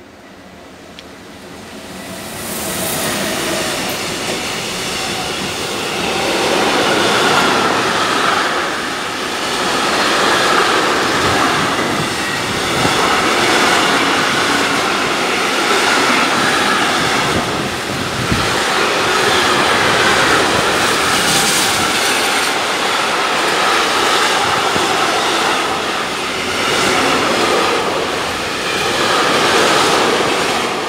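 Freight train of tank-container wagons passing close by on the near track. The sound builds over the first few seconds as the locomotive comes in, then holds as a loud, steady rolling noise of wagons going by, swelling and easing every few seconds.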